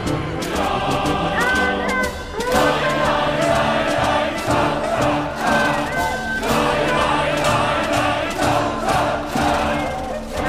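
Music with massed voices singing along, over the noise of a large outdoor crowd, with a steady beat.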